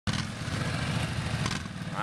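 Two ATV engines running steadily at low revs: a Yamaha Grizzly 700's single-cylinder engine close by and a Kawasaki Brute Force 750's V-twin behind it, a low, pulsing engine note.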